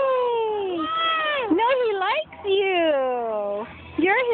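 A young child's high-pitched, wordless squealing: about four long cries, each sliding up and then down in pitch, the last and longest falling away near the end.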